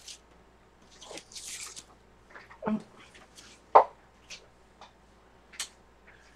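Scattered small taps and clicks of art supplies being handled and applied at a work table. A short rustle comes about a second and a half in, and a sharper knock near four seconds in is the loudest sound.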